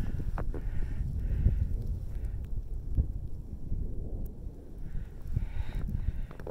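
Wind buffeting the phone's microphone at an exposed, snow-covered summit: an uneven low rumble, with a few faint clicks.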